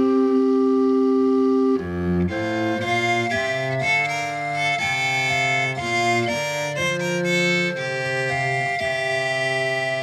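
Instrumental break in a traditional English folk song, with no singing: a held chord for about the first two seconds, then a slow melody of separate held notes stepping up and down.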